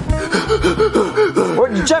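A person panting and gasping hard, out of breath, in quick voiced breaths. A man's voice says "Jeffy" near the end.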